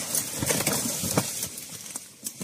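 Dry stems and leaves rustling and crackling irregularly as someone tramples and pushes through dense undergrowth.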